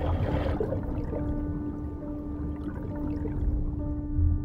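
Underwater film soundtrack: a low, steady rumble of water with a single sustained musical tone held over it.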